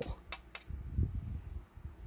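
A few light clicks and soft handling sounds from a small metal Allen key and the plastic hull of a model ship, over a low steady hum.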